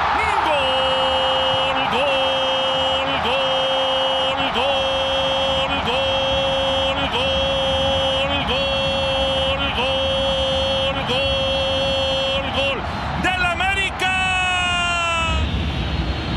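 Spanish-language football commentator's long drawn-out goal cry, 'gol', held at one steady pitch and re-voiced about every second and a half, ending in a falling slide about fourteen seconds in.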